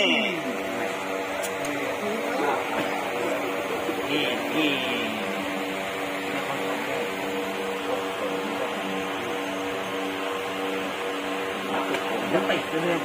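A steady hum of several held tones runs throughout, with a voice murmuring briefly near the start and again about four seconds in.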